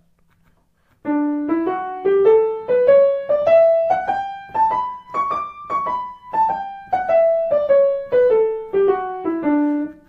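Piano playing a scale in a dotted rhythm, ascending about two octaves and then descending back to the starting note, after a brief pause at the start.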